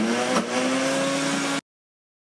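Ninja Foodi blender motor running on high as it grinds almonds into almond butter, its pitch rising a little as it spins up under the thick nut paste. The sound cuts off abruptly about a second and a half in.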